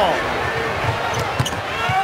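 A basketball being dribbled on a hardwood court, a few low bounces about a third of the way in, over the steady noise of an arena crowd.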